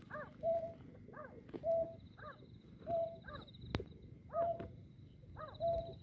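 White-breasted waterhen calls: a two-part note, a rising-and-falling syllable then a short level one, repeated over and over. A faint high pulsing trill runs underneath, and there is one sharp click about two-thirds of the way through.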